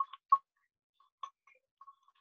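Irregular short clicks, a few close together at the start, then sparse fainter ones.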